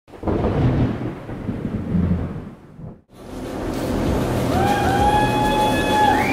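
A thunder sound effect rumbling for about three seconds and dying away. After a short silence comes the steady din of music and a crowd in a large hall, with a long held note starting near the end.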